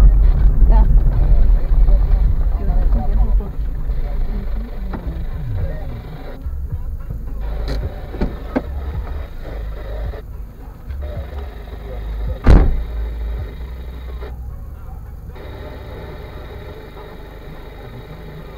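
A car heard from inside its cabin, rolling slowly over a rough dirt road with a low rumble that fades over the first few seconds as it comes to a stop and idles. One sharp knock sounds about twelve seconds in.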